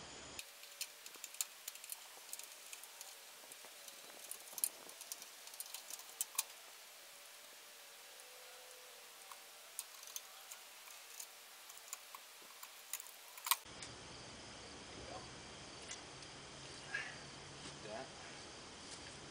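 Scattered light metallic clicks and taps of screws and hand tools as a mounting bracket is unscrewed and worked free from a welder's sheet-steel cabinet, busiest in the first few seconds, with one sharper click near the end.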